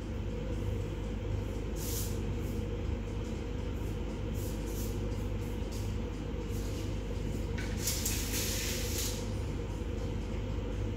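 Steady low background hum, with a few brief soft rustles about two seconds in and again near the end.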